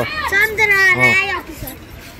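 Children's high-pitched voices talking and calling out for about the first second, then quieter.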